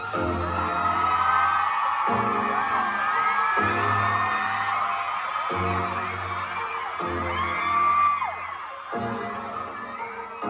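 Arena concert music over the PA, slow sustained low chords changing about every one and a half seconds, under an audience screaming and whooping, loudest about eight seconds in.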